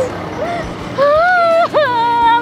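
A woman crying hard: a short sob about half a second in, then a long, high, wavering wail from about a second in that breaks into sobs near the end. A faint low steady hum runs underneath.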